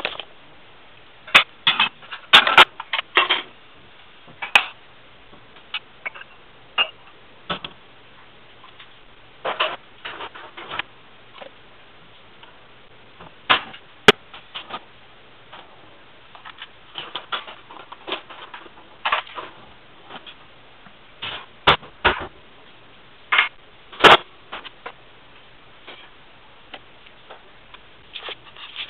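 Dishes, bowls and plastic food containers being picked up off a granite countertop and put away. The sound is irregular clinks, clacks and knocks, some of them sharp, with short quiet gaps between.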